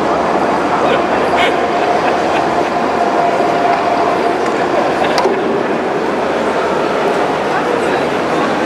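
Indistinct crowd chatter, a steady, loud wash of many voices with no clear words, with a faint steady whine through the middle.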